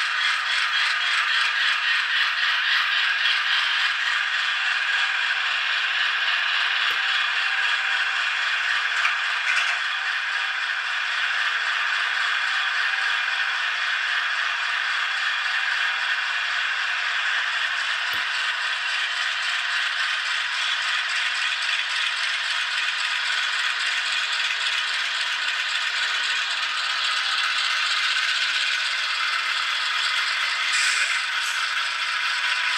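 Simulated GE diesel locomotive engine sound from ESU LokSound V5 Micro DCC decoders, played through tiny 9 x 16 mm sugar cube speakers in a pair of N scale Atlas Dash 8-40BW models: a thin, rattling chug with no deep low end, pulsing quickly for the first ten seconds or so and then steadier.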